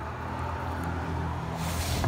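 Low, steady engine hum of a vehicle, slowly growing louder, with a brief rushing hiss near the end.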